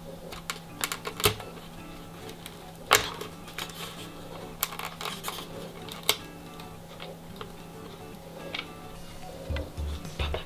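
Scattered, irregular clicks and taps of hands working a plastic tail-wheel bracket into a foam model-airplane fuselage, over steady quiet background music. A few low bumps come near the end.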